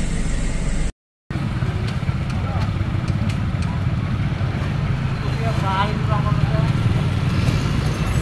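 Road traffic: car and motorcycle engines running steadily, with voices in the background partway through. The sound drops out completely for a moment about a second in.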